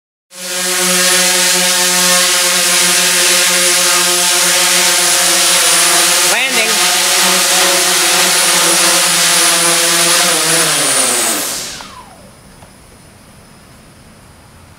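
DJI S900 hexacopter's six motors and propellers running with a steady, many-toned hum, with a brief wobble in pitch about halfway through. Near the end the pitch falls and the sound dies away as the motors spool down on landing, the battery at the very end of its charge.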